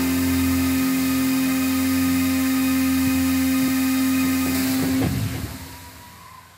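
A rock band's amplified instruments holding one steady final chord with a low hum beneath it. It stops about five seconds in and dies away.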